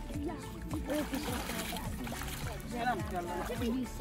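Voices and music in the background, with a short burst of water splashing from about one to two seconds in: a large carp thrashing in a landing net in shallow water.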